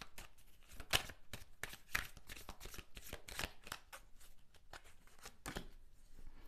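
A deck of tarot cards being shuffled and handled by hand: a run of irregular soft card clicks and flicks.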